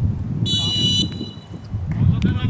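Referee's whistle blown once, a short high-pitched blast of about half a second, about half a second in, over a steady low rumble of wind on the microphone.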